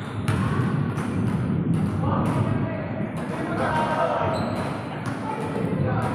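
Basketball bouncing on a hard court floor during one-on-one play, a few bounces with gaps between them, with people's voices in the background.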